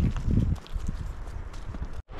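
Footsteps on loose stony ground: scattered sharp ticks of shoes on stones, with a heavy low rumble in the first half second.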